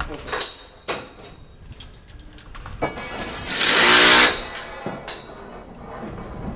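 Building-work noise at scaffolding: a few sharp knocks, then a loud buzzing burst lasting under a second about four seconds in.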